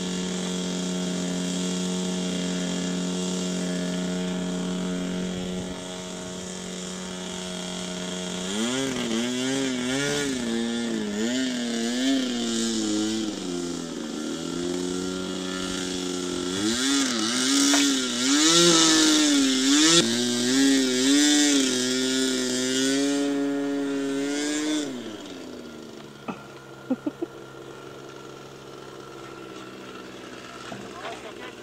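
Rossi .53 two-stroke glow engine on an RC model plane running on the ground. It holds a steady pitch at first, is then throttled up and down over and over so its pitch rises and falls, and cuts out with about five seconds left, followed by a few sharp clicks.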